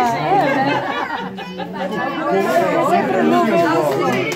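Several people talking at once around a table: lively group chatter with overlapping voices.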